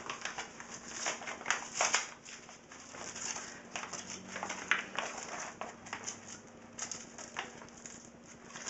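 Paper mailer envelope being handled and torn open by hand: irregular rustling, crinkling and short tearing scrapes.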